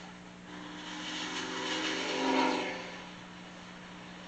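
A vehicle engine in a film soundtrack played through a television's speaker. Its pitch slowly rises and it grows louder, then fades away about three seconds in, over a steady low hum.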